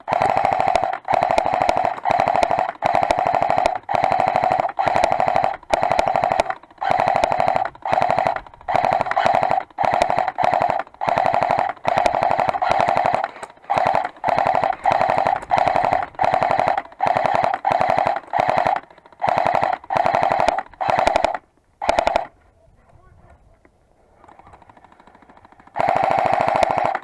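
Airsoft M249 support weapon firing close to the microphone in short full-auto bursts, one after another with brief pauses, each a fast buzzing rattle. The firing stops about 22 seconds in.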